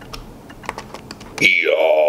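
A few faint laptop keyboard clicks, then about one and a half seconds in a loud, steady electronic tone starts, a high whine over lower notes that slide up at first.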